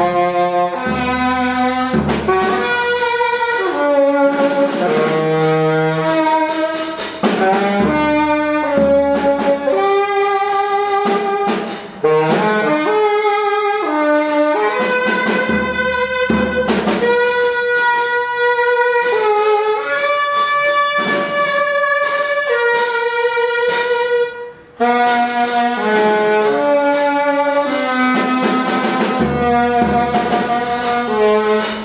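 Tenor saxophone improvising freely, a line of held notes stepping up and down, over drums and cymbals. The sax breaks off briefly twice, about twelve and twenty-five seconds in.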